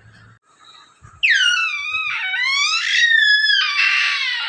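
A baby's high-pitched squealing cry begins about a second in. It slides down, dips and rises again over roughly three seconds.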